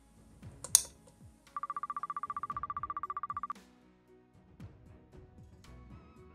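Background music, with one sharp click just under a second in. It is followed by a fast-pulsing electronic beep that lasts about two seconds.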